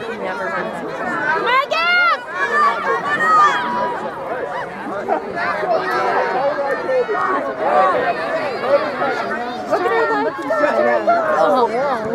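Spectators' voices talking over one another in overlapping chatter, with one higher-pitched call about two seconds in.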